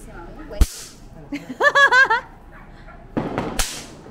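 Two bang snaps (traqui-traqui throw-down snappers) cracking sharply as they are thrown and strike the floor, one about half a second in and another near the end, each with a brief hiss.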